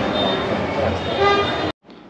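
Busy ambience of people's voices and traffic noise, with a short pitched toot about a second and a half in. It cuts off abruptly near the end and gives way to a faint steady room hum.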